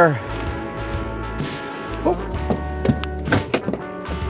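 Background music with held chords and a pulsing bass line. A short spoken exclamation comes about halfway through, and two or three sharp knocks land near the end.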